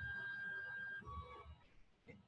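Desktop 3D printer's stepper motors whining as the print head moves at the start of a print: one steady high pitch for about a second, then a step down to a lower steady pitch for about half a second.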